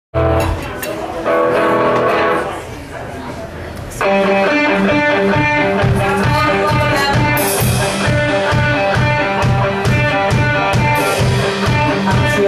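Live rock band with electric guitars, bass and drums opening an original song. A few sustained chords ring out first, then about four seconds in the full band comes in with a steady beat.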